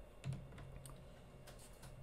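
Faint scattered clicks and taps of hard plastic graded-card slabs being handled and slid over one another on a desk, over a faint steady low hum.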